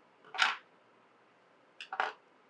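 Fly-tying scissors snipping through the tying thread and the excess saddle hackle together: one sharp snip about half a second in, then a quick double click near the end.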